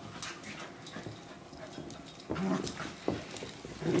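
Puppy making several short vocal sounds while play-fighting; the loudest comes about two and a half seconds in, with two more near the end.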